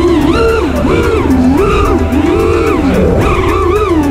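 Racing quadcopter's brushless motors and tri-blade propellers whining, the pitch swinging up and down several times a second with throttle, over background music with a steady beat.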